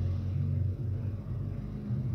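A low, steady rumble that eases off a little about a second in.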